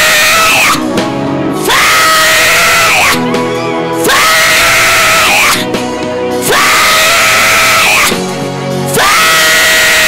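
A woman screaming: a run of long, high, loud screams of about one and a half seconds each, coming one after another every two to two and a half seconds, with background music underneath.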